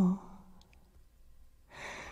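The tail of a sung note ends just after the start, then a pause, then a singer's quick audible inhale near the end, a breath taken before the next sung line.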